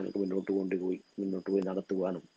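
A man speaking in a lecture, with a short pause about a second in; a faint steady high-pitched tone runs underneath.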